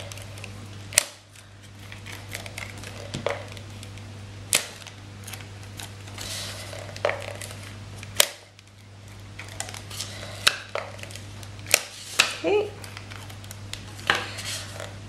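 Handheld Fast Fuse adhesive tape dispenser drawn along cardstock, with a soft hiss as the adhesive strip unrolls and a sharp click each time a strip ends, about five clicks spread through.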